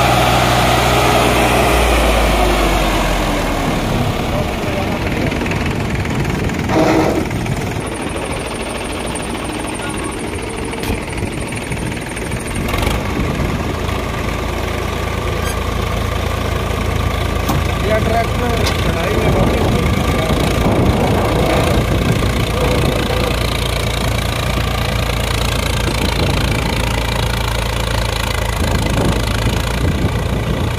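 Swaraj 744 XT tractor's three-cylinder diesel engine labouring under a fully loaded trolley on a sandy climb, its pitch dropping over the first few seconds as it bogs down, then running steadily. The tractor cannot make the climb and needs a tow.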